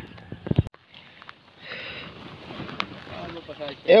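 Water sloshing and lapping close to the microphone as someone moves through river water, after a few sharp handling knocks at the start.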